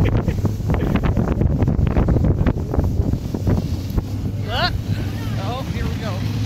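Wind buffeting the microphone over the steady low hum of a truck engine as the truck tows sleds through snow. About four and a half seconds in comes a high, rising shriek, followed by a wavering yell.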